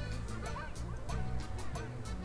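Background music with a steady beat: a repeating bass line, evenly spaced hi-hat ticks and short bending lead notes.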